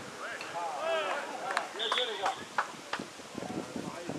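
Footballers' shouts and calls across the pitch, with a short, high referee's whistle blast about two seconds in and a few sharp knocks.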